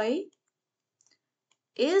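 A lecturer's voice finishing a phrase, then a pause of about a second and a half broken by a few faint ticks of a stylus on a writing tablet, before speech resumes near the end.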